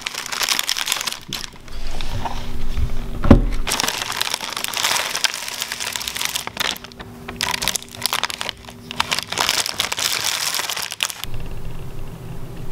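Plastic wrapper of a Tim Tams chocolate biscuit packet crinkling in repeated bursts as it is handled and opened. A single sharp thump comes about three seconds in.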